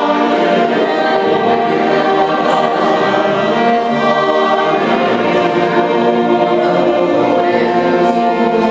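A small mixed choir of men's and women's voices singing long held chords, with string accompaniment.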